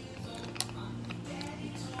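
A metal straw stirring thick juice in a glass, clicking and scraping against the glass a few times, over steady background music.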